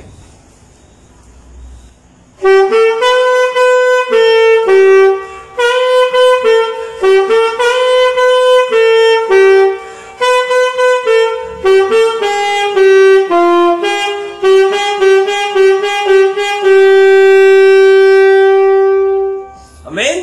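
Alto saxophone playing a slow, simple worship-song melody note by note, coming in about two and a half seconds in and ending on one long held note.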